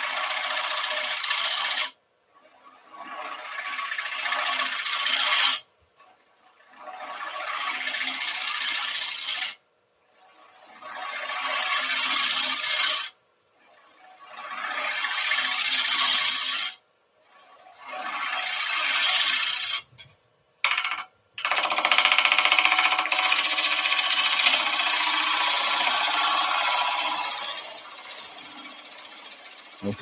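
Turning tool cutting on a spinning wood lathe, shaving a glued-in wooden plug down flush with the coaster blank: a hissing cut that comes in runs of three or four seconds, each building up and then stopping suddenly, then one longer continuous cut for the last eight seconds or so.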